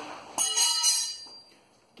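A sudden metallic clatter with a high ringing tail that fades over about a second, as broken 8670 steel knife blades are tossed aside. The sound cuts off abruptly near the end.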